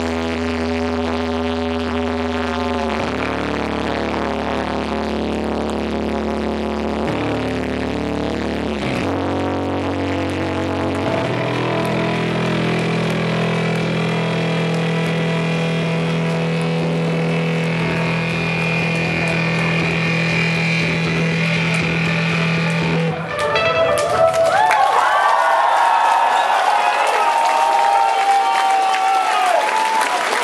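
Live band with guitars and synth playing slow sustained chords over a deep bass note that steps to a new note every few seconds. About 23 seconds in the music stops and the crowd breaks into loud applause and cheering with whistles.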